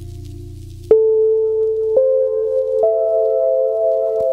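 Ambient music: a low drone fades away, then about a second in a clear sustained tone starts suddenly, and two higher tones enter about a second apart, stacking into a held chord.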